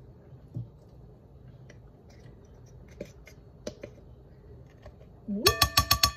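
Faint clicks of handling, then near the end a quick run of sharp clinks from a spoon knocking against a glass mixing bowl, with a ringing tone after each.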